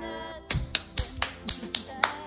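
Hands clapping quickly, about four sharp claps a second, starting about half a second in, over music.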